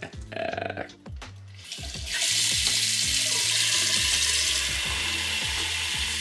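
Tap water running from a bathroom faucet into a paper instant-oatmeal cup: a steady hiss that starts about two seconds in and stops near the end, after a few light handling clicks.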